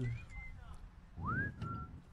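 A person whistling two short notes: a faint one that rises and holds, then a louder one about a second in that glides up and holds steady.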